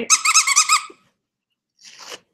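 Squeaker inside a plush taco dog toy squeezed repeatedly: a quick run of about eight high-pitched squeaks in under a second.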